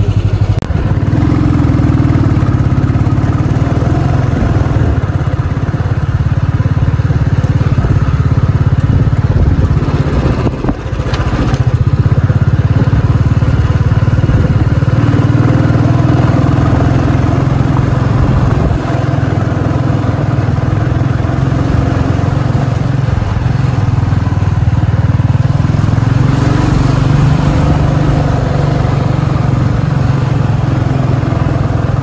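Small two-wheeler engine running steadily under way, heard from the rider's seat, easing off briefly about ten seconds in.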